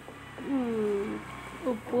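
A woman's drawn-out vocal sound, like a long 'hmm' or held vowel, falling slightly in pitch. A short syllable follows as she starts to speak again.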